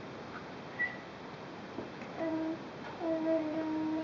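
A person humming two steady held notes at about the same mid pitch, a short one about two seconds in and a longer one starting about a second later.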